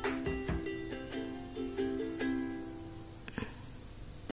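Quiet background music: a light tune of plucked notes, fading out about three seconds in.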